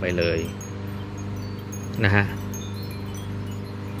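A steady low hum with brief high ringing tones here and there, like chimes, behind two short spoken phrases.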